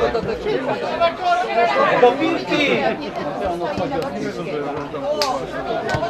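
Several people talking over one another in steady chatter, with two short sharp knocks near the end.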